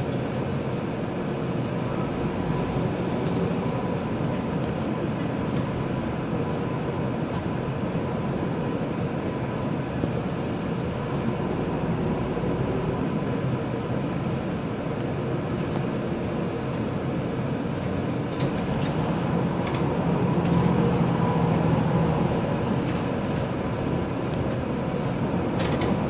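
Inside a city bus in slow traffic: the engine running and the cabin's steady hum, with a faint steady tone throughout. The low drone grows a little louder about twenty seconds in as the bus moves off.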